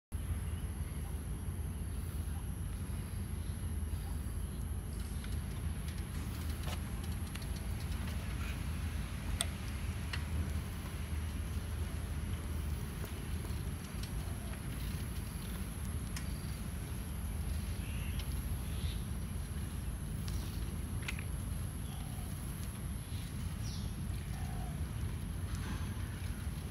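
Bicycle ride on a paved path: a steady low rumble of wind on the microphone and tyres rolling, with a few faint clicks and brief faint chirps.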